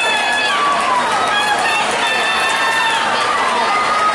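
Spectators shouting and cheering swimmers on during a race, a string of high-pitched, long held calls, some sliding down in pitch as they end, over a steady din of crowd noise.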